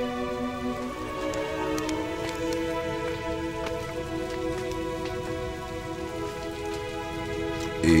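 Sustained soundtrack music of long held chords, the chord changing about a second in, over a steady rain-like hiss with scattered small crackles.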